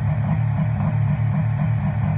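Subaru Impreza rally car's engine running while the car waits stationary at the start line, a steady low note with a slight pulse.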